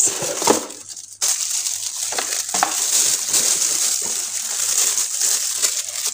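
Clear plastic bag crinkling and rustling as a salt and pepper grinder set is pulled from its cardboard box and handled in its wrapping. There is a short lull about a second in, then steady crinkling.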